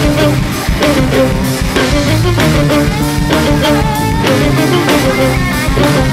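Live band playing an instrumental passage of the song, led by guitar over a drum kit with a steady beat.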